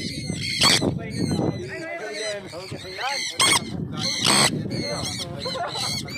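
Several people talking and calling out at once, with a few loud shouts standing out, about a second in and again around three and a half and four and a half seconds.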